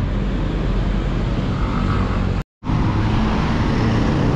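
Steady city street traffic noise. About two and a half seconds in it cuts out for an instant, then comes back as steady road and traffic noise heard from a moving bicycle.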